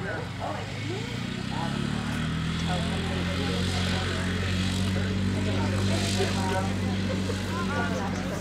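A motor's steady engine drone that grows louder over the first couple of seconds and then holds.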